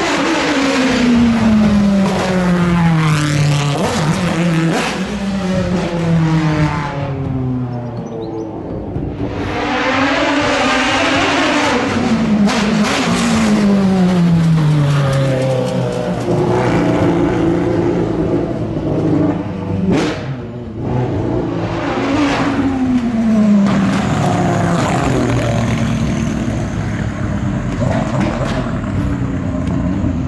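Several racing cars passing one after another at high revs, engine pitch falling in repeated sweeps as each goes by and changes gear. A single sharp crack about twenty seconds in.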